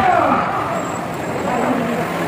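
Hubbub of a large crowd moving through a hall: many voices at once over a steady background rumble, with one voice more prominent near the start.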